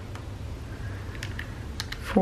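Button presses on a TI-30X IIS scientific calculator: a few separate clicks as figures are keyed in to add up a column of numbers.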